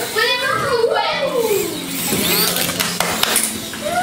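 Children's voices talking and calling out, with a steady low hum and a few clicks in the second half.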